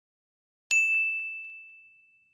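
Notification-bell chime sound effect: a single bright ding under a second in, ringing on one high tone and fading away over about a second and a half.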